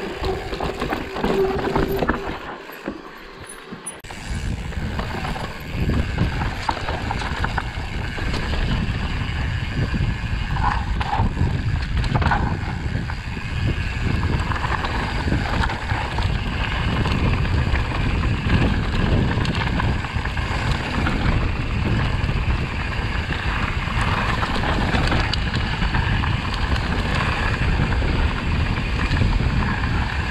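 Mountain bike riding down a rocky dirt trail: tyres rumbling over dirt and stones, with the bike rattling and knocking over the bumps. It drops quieter for a moment about three seconds in, then carries on steadily.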